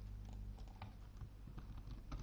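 Faint computer keyboard typing: a few scattered, irregular keystrokes over a low steady electrical hum.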